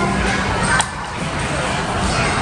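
Busy arcade background: music and crowd noise from a large indoor play centre, with a single sharp knock a little under a second in.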